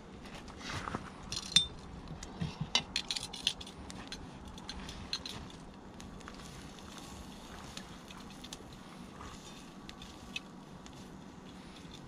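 Metal tongs clinking and knocking against a cast iron pan and the coals of a wood fire, a quick run of sharp clinks in the first few seconds, over the faint crackle of the burning coals.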